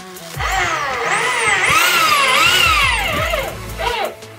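Electric hand drill boring into a metal sheet, its motor whine rising and falling in pitch as the bit bites and the trigger is eased, for about three seconds before it stops near the end.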